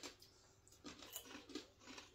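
Faint, irregular crunching of hand-cooked potato crisps being chewed.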